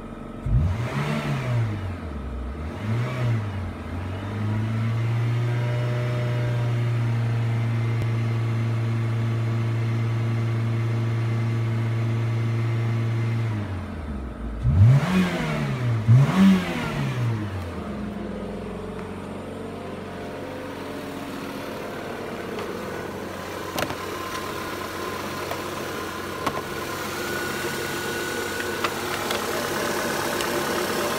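Renault Laguna II engine being revved with the car standing: two quick blips, then held steady at raised revs for about nine seconds. Two more sharp blips follow, then it drops back to a steady idle.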